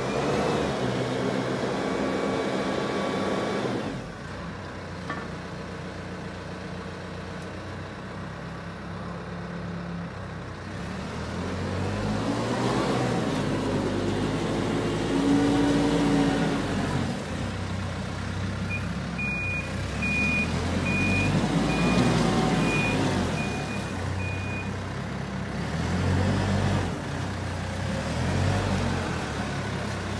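CASE TX170-45 telehandler's diesel engine running, revving up and down several times as the machine manoeuvres. A reversing alarm beeps about once a second for several seconds midway.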